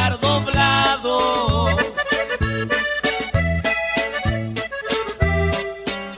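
Instrumental passage of regional Mexican band music with no singing: a lead melody line over a bouncing bass line that lands on the beat.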